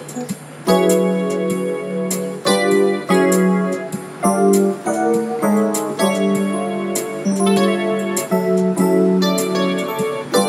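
Keyboard music with a piano-like sound: chords struck in a steady rhythm, changing about once a second after a brief lull near the start.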